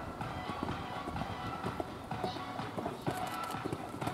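Hoofbeats of a horse cantering on sand arena footing, with music playing in the background.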